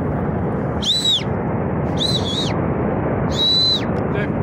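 Three shrill whistles, each about half a second long, rising and then falling in pitch. Under them runs the steady noise of a glacial flood surge of water and debris rushing down the gorge.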